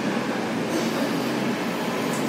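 Steady rushing noise of a large hall with ceiling fans running over a quiet seated crowd, with no distinct events.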